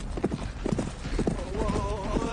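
AI-generated sound of two horses galloping: a fast, uneven run of hoofbeats, with a wavering vocal call joining about a second and a half in.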